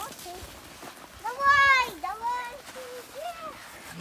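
A young child's high-pitched, wordless call lasting under a second, starting about a second in, with its pitch rising and then falling, followed by a few shorter, softer vocal sounds.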